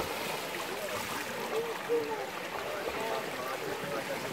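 Pool water splashing and churning as several swimmers surface and swim, a steady rush of water, with faint voices in the background.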